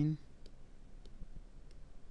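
Three faint computer mouse clicks, about half a second apart, pressing keys on an on-screen calculator.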